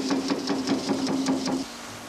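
Eckold Kraftformer's flattening dies hammering sheet metal in rapid, even strokes over a steady machine hum, working dents and buckles out of the panel. The hammering stops near the end.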